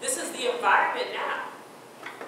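A woman speaking, a short phrase that ends after about a second and a half; only speech.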